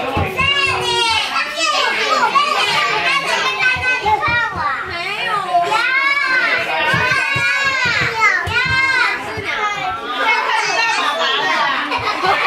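Several young children shouting and squealing excitedly at play, their high voices rising and falling without a break.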